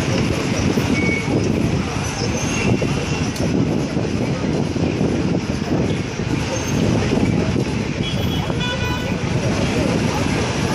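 Downtown street traffic heard from above: a steady din of engines and voices, with a short car horn toot near the end.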